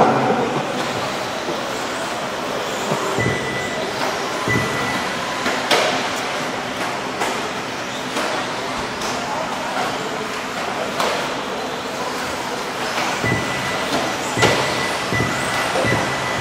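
Radio-controlled off-road buggies racing on an indoor dirt track: a steady rushing hiss of motors and tyres with a thin high whine that comes and goes, and a few sharp knocks spread through it.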